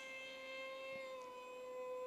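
Distant whine of an RC park jet's 2200 kV brushless electric motor turning a 6x4 propeller in flight. It is a faint, steady whine that drops slightly in pitch about halfway through.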